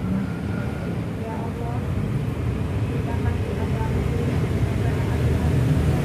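A voice leading a group prayer, low and muffled, over a steady low rumble.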